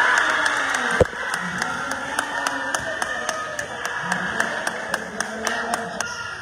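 Spectators clapping in a steady rhythm, about four claps a second, over crowd noise. A single loud thump, the loudest sound, comes about a second in.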